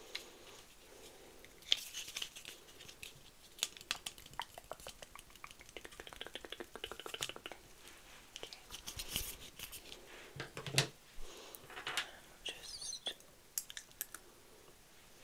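Close-miked ASMR hand sounds: fingers rubbing and brushing right by the microphone as if working through hair, with many sharp crackles and clicks and a run of fast crackling about six seconds in.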